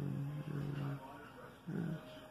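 A man's unaccompanied voice singing or humming held, wordless notes: one note of about a second, then a short one near the end.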